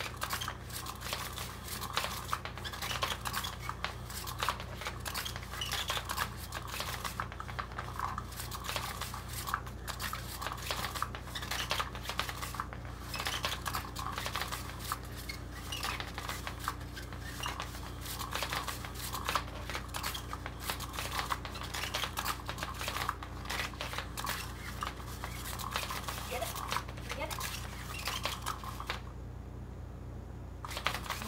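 Electronic Cat's Meow cat toy running: its motor drives a wand around under the nylon cover, giving a continuous rustling with rapid clicking over a steady motor hum. It cuts off suddenly about a second before the end.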